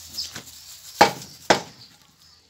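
Heavy knife chopping raw beef on a wooden log chopping block: a few light knocks, then two loud chops about half a second apart, about a second in.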